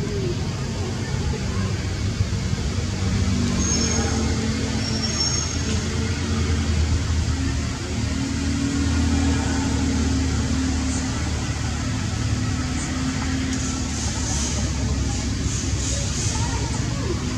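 A steady low rumble of a running motor with faint steady hum tones, like a vehicle engine idling nearby. A few short high chirps come about four seconds in.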